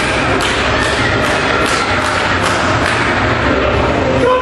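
Rhythmic pounding in time, about two and a half beats a second, over the steady noise of a crowd at a wrestling show.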